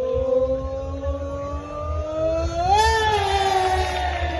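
A single voice holding one long note, likely over the stage's PA, rising slowly in pitch and swelling near the end. A choppy low rumble of wind on the microphone runs underneath.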